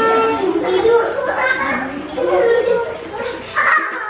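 Young children's voices: high-pitched chatter and calls while they play.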